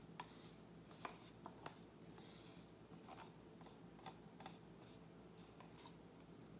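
Near silence broken by faint light taps and scrapes of plastic paint cups and a wooden stir stick being handled, with a brief soft hiss about two seconds in.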